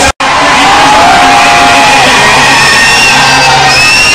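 Loud live Punjabi concert sound: crowd cheering and shouting over music with long held notes, a steady low note coming in about halfway. A split-second dropout to silence right at the start.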